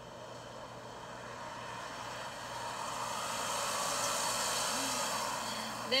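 A passing vehicle, heard as a rushing noise that swells gradually to a peak about four seconds in and then eases off a little.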